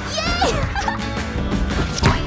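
An animated hen character's gleeful vocal whoop with a wavering pitch near the start, over background music.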